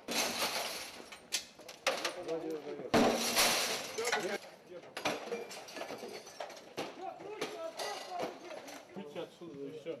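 Window glass being smashed in, in a run of sharp crashes with the loudest about three seconds in, then further clattering and tinkling of glass, with men's voices shouting over it.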